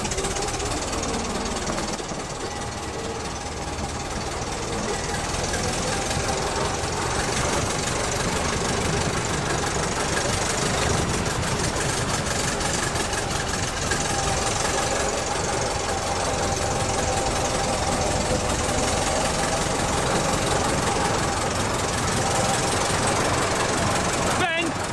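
Vintage fire engine's engine running as the truck drives along, a rapid, even, mechanical beat that grows a little louder over the first few seconds.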